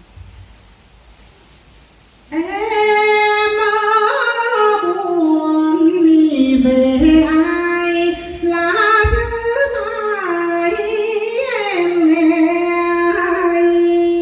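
A woman singing a Quan họ folk-song phrase solo and unaccompanied. She starts about two seconds in and sings long, held notes that slide and waver between pitches.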